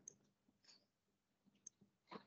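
Near silence with a few faint, sharp clicks, once near the start and again about two-thirds of the way in.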